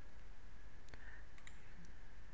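Computer mouse clicks: one about a second in, then a quick pair and one more near the end, over a faint steady electrical hum.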